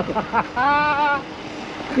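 A man's voice laughing in short bursts, then a drawn-out held vocal call about half a second in that tails off.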